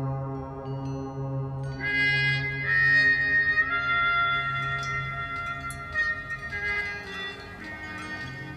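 Small brass trumpet playing long held high notes over a steady low drone, everything ringing on in the very long reverberation of an underground water cistern. A few light high clicks sound in the second half.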